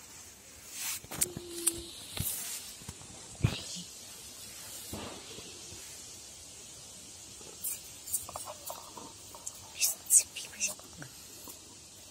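Soft scraping and clicking as a plastic cup and a tin can are worked against wooden boards, with hushed, whispered voices in between.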